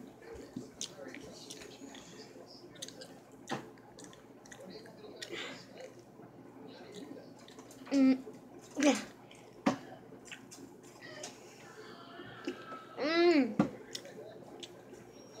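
A person chewing a gummy candy close to the microphone: soft wet mouth clicks and smacks with a couple of sharper clicks. Two short hummed 'hmm' sounds come about eight seconds in, and another near the end.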